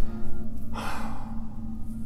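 A man sighs once, a breathy exhale of about half a second coming about a second in, in frustration over a hard task.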